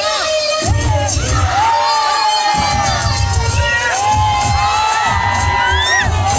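A crowd screaming and cheering with many overlapping high-pitched shouts, over loud dance music with a deep bass beat.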